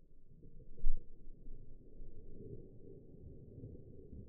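Deep, muffled rumbling with one loud low thump about a second in. It is the slowed-down, pitched-down sound of a 350 Legend bullet striking a ballistic gel block.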